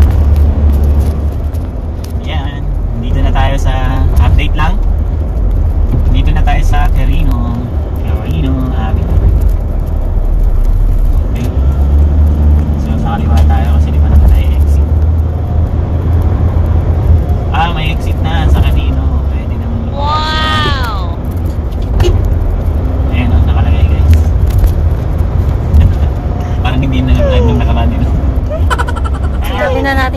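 Road noise inside a moving car: a steady low rumble. Voices talk quietly on and off over it, and a brief high-pitched voice sound comes about two-thirds of the way through.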